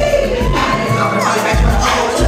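Crowd cheering and shouting over a loud hip-hop backing track at a live club show. The bass cuts out for most of a second around the middle, then comes back in.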